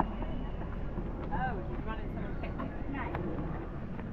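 Brief, indistinct voices over a steady low background rumble of outdoor ambience.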